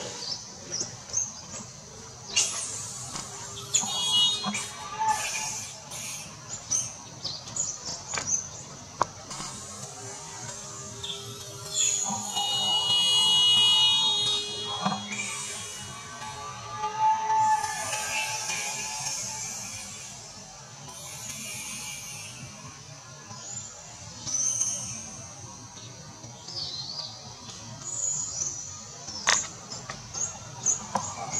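Irregular high-pitched chirps and squeals from animals, loudest about 12 to 14 seconds in, over a steady high hiss.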